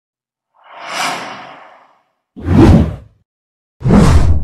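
Intro whoosh sound effects: a soft, airy whoosh about half a second in, then two louder whooshes with a deep low end, the second starting near the end.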